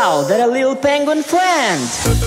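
A cartoon character's voice making a few squeaky, wordless calls, each sliding up and then down in pitch.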